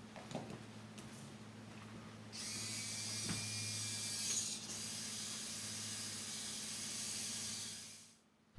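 A 5-volt continuous-rotation hobby servo starts about two seconds in and whirs steadily for about five seconds. It winds a nylon cord on its drive pulley to pull the camera slider's plate along the rail, then stops just before the end. Light clicks come before it starts.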